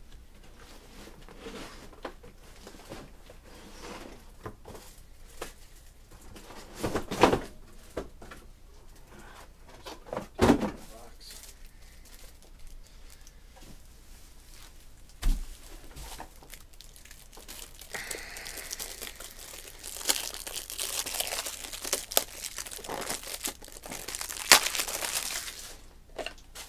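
Crinkling and tearing of packaging being handled, with a few sharp knocks in the first half; the crinkling gets busier and louder over the last eight seconds.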